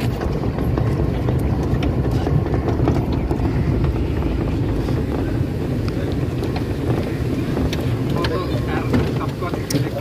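Steady low rumble of wind buffeting the microphone, with faint voices behind it.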